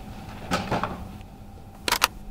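Knocks and bumps of a portable party speaker being handled and set in place, then a short, sharp click near the end as a button on its control panel is pressed.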